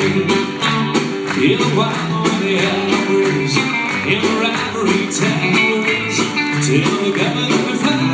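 A country band playing live on stage, guitars and keyboard with a steady beat.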